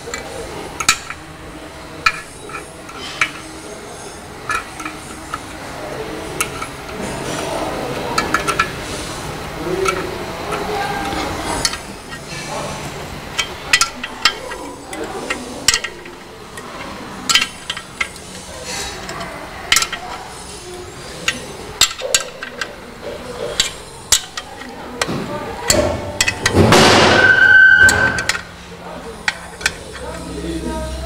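Metal clinks and clicks from a hand wrench working the bolts of a car's clutch pressure plate, as the plate is unbolted from the flywheel. Near the end, a louder rough noise lasts about two seconds.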